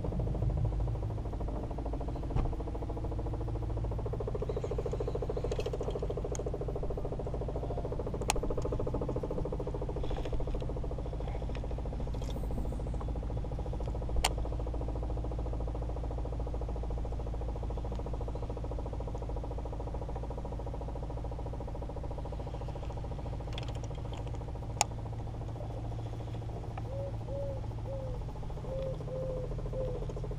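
A boat motor running steadily with a low, even hum, broken by a few sharp single clicks. Near the end comes a run of short high chirps.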